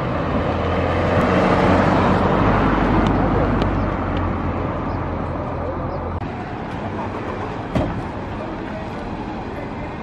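Roadside traffic noise: a vehicle passes, swelling over the first few seconds and then fading, over a steady low engine hum that cuts off about six seconds in. There is one sharp knock near eight seconds.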